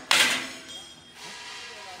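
A brief, sharp clatter right at the start that dies away within about half a second, followed by faint background noise.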